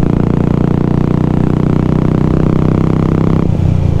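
Royal Enfield Classic 350 single-cylinder engine with an aftermarket exhaust, running steadily at a cruising speed of about 80 km/h. About three and a half seconds in, the note suddenly goes duller.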